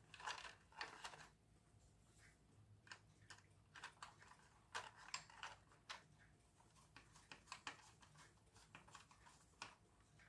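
Faint, scattered clicks and taps of plastic toy parts being handled, as a small screw is driven into the plastic body with a screwdriver.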